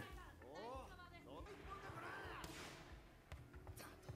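Faint Japanese dialogue from the anime playing at low volume, a character speaking in short phrases over near-silent room tone.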